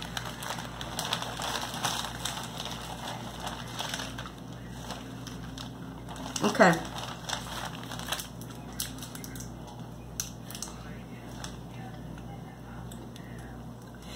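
Plastic snack packaging crinkling and rustling as it is handled, most in the first few seconds, with scattered light clicks and rustles later.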